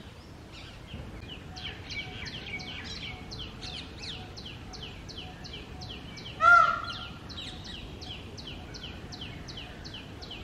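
An Indian peacock gives one short, loud call about six and a half seconds in. Behind it another bird keeps up a quick series of high, falling chirps, about three a second.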